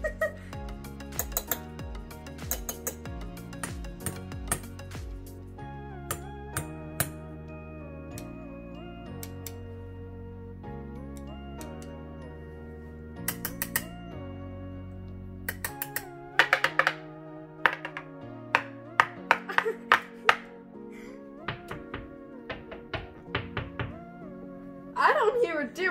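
Small metal enamel pins tapped and clinked, making sharp clicks in several quick clusters, over background music.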